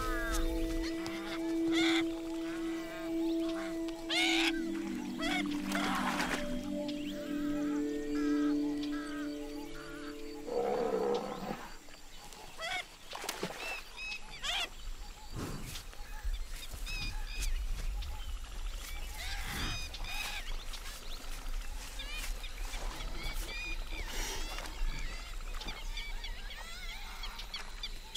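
Background music with long held notes for about the first ten seconds, over many short, high calls from smooth-coated otters that carry on after the music drops away.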